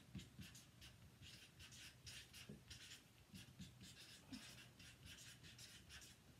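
Faint scratching of a marker tip on a sheet of chart paper, writing two words in a string of short strokes.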